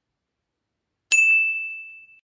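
About a second in, a single bell-like ding strikes and rings out, fading over about a second.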